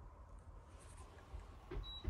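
Quiet room tone with a faint low rumble. A single brief, faint high beep sounds near the end.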